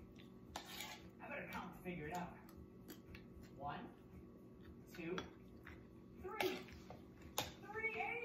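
A metal spoon clinking and scraping on a ceramic plate while someone eats rice, a handful of short sharp clicks, the loudest two near the end. Short snatches of voice or babble come between them, with no clear words.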